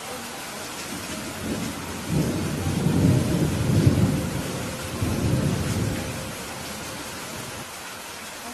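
Steady rain with a rolling rumble of thunder that builds about two seconds in, swells twice, and dies away by about seven seconds.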